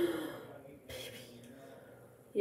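A low, held vocal murmur trailing off, then a single sharp click about a second in from the plastic handheld mist fan being handled and opened.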